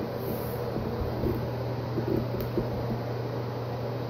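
A steady low mechanical hum with faint, irregular soft knocks and rustle.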